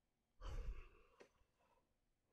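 A man sighing: one breathy exhale close to the microphone, about half a second in and lasting about half a second, followed by a faint click.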